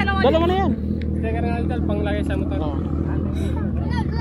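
A Kawasaki ZX-6R's inline-four engine idling steadily under children's voices talking over it.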